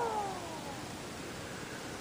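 Small cooling fan of an MPT-7210A MPPT solar charge controller spinning down after the unit is switched off. Its whine falls in pitch and fades out within the first second, leaving a faint steady hiss.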